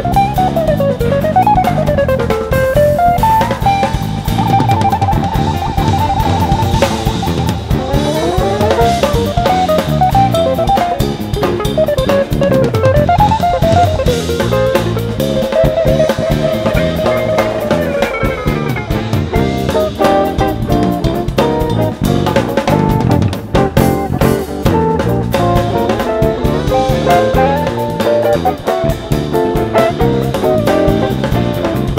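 Live jazz band: a hollow-body electric guitar plays a fast, sliding lead line over a busy drum kit and electric bass, with a rapidly repeated high note for a few seconds early in the phrase.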